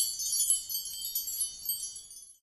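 A shimmering chime sound effect: a dense cluster of high, bell-like ringing tones sprinkled with little tinkling hits, fading away near the end.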